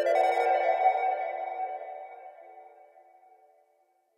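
The closing chord of a song ringing out and fading away over about three seconds into silence.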